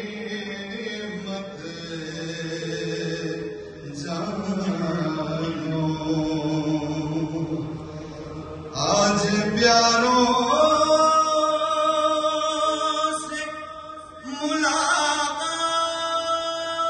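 A voice chanting a salam, a Muharram lament in Urdu, in long held melodic lines. A louder phrase begins about nine seconds in, sliding up to a note that is held, and a new phrase starts near the end.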